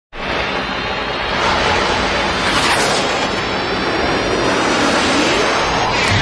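Cinematic logo-intro sound effect: a loud rushing noise swell with a sweeping whoosh about two and a half seconds in and faint tones rising slowly toward the end.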